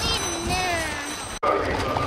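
A single voice, probably the race commentator over the track's public-address system, drawn out and falling in pitch. It is cut off abruptly about one and a half seconds in, leaving a low outdoor rumble.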